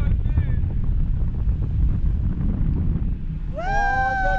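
Wind rumbling steadily on the microphone of a camera moving through the air on a towed parasail rig. Near the end a high, drawn-out voice call rises and then falls.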